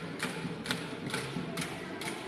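Flat bronze gongs (gangsa) of an Igorot dance ensemble struck in a steady beat, about two strikes a second, each strike ringing briefly.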